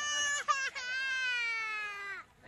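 Toddler crying: a short cry, then one long wail that slowly falls in pitch.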